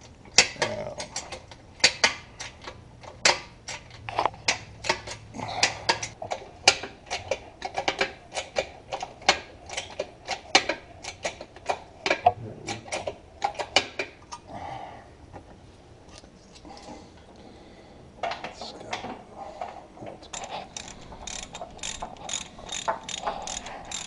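Hydraulic bottle jacks under a tractor-splitting stand being pumped by hand to raise it, a run of sharp clicks, about two a second. The clicking stops for a few seconds about midway, then starts again.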